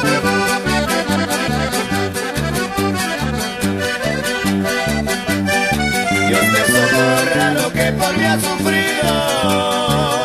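Norteño band playing an instrumental passage: an accordion melody over an alternating bass line and a steady drum beat.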